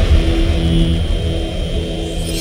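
Intro logo sting sound design: a deep, loud rumble with steady low tones held under it, slowly fading after a hit just before.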